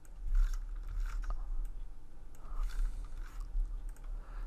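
Irregular clicks and short rustling strokes from a computer mouse and keyboard as polygon-lasso selections are clicked out, over a low steady hum.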